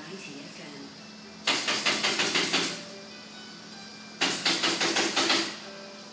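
A person laughing in two short bursts of rapid, evenly repeated pulses, each about a second long, over a steady low hum.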